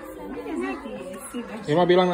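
Speech only: overlapping voices talking, with a louder, lower voice coming in near the end.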